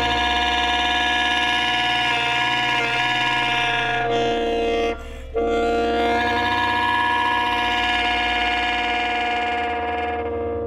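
Alto saxophone holding long, sustained notes, rich in overtones, over a low steady electronic drone. The saxophone breaks off briefly about five seconds in and then comes back in.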